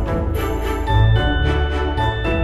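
Instrumental background music with jingle bells shaken on a steady beat, about twice a second, over bass and held notes. About a second in, bright high bell-like notes join.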